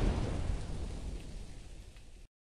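The tail of a cinematic impact sound effect: a low, noisy rumble with no clear pitch, fading steadily away.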